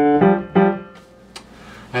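Grand piano played by the left hand: the last notes of a slow descending broken chord, one struck at the start and another about half a second in, both ringing out and dying away by about a second in.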